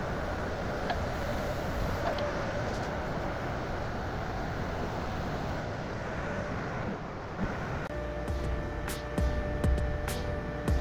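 Excavator engine running steadily, heard from inside the cab. Background music comes in about eight seconds in.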